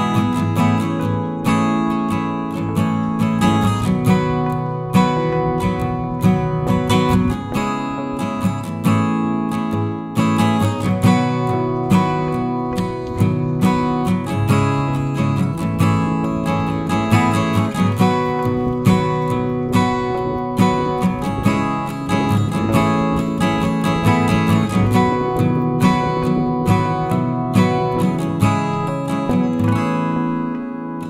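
Acoustic guitar music: strummed chords and plucked notes at a steady, even pace.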